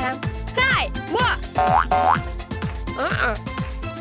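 Cartoon background music with a stepping bass line. Over it are wordless cartoon character vocalisations whose pitch swoops up and down, with a rising glide about halfway through.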